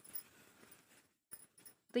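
Faint rustling of cotton fabric as hands turn a sewn sports bra right side out, with a few soft ticks in the second half.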